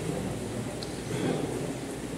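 Steady low rumbling background noise of a large hall, picked up through a handheld microphone.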